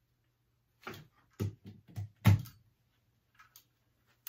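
A quick series of five or six dull knocks and thumps, the loudest a little past two seconds in, over a faint steady hum.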